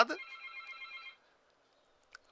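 A brief electronic ringing tone, fluttering rapidly for about a second, then cutting off.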